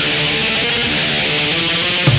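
Black metal track opening with a distorted electric guitar playing alone, a dense, steady wall of chords with no drums yet.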